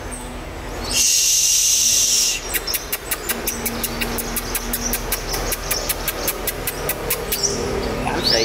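Sunbird calling: a harsh, hissing rasp lasting about a second and a half, then a long run of sharp ticks, about four or five a second.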